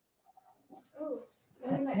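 Voice on a video call cutting in and out: the sound drops out completely, a brief faint, garbled scrap of voice comes through about a second in, and then the voice comes back near the end.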